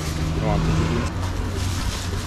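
A brief voice over a low, steady motor rumble.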